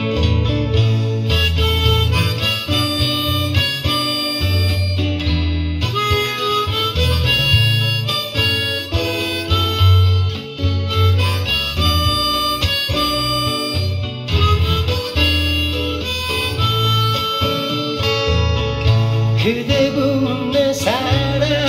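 Harmonica played from a neck holder, a melody of held notes, over steady acoustic guitar accompaniment.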